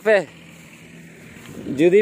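A person speaking, the voice trailing off in a falling syllable, then a pause filled only by faint, even hiss before speech starts again near the end.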